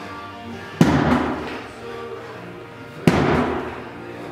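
A 50 lb slam ball driven down hard onto the floor twice, a little over two seconds apart, each slam a sharp thud that dies away over about a second. Music plays underneath.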